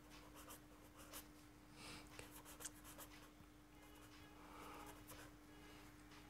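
Faint scratching of a marker pen writing words on paper, in short irregular strokes, over a faint steady hum.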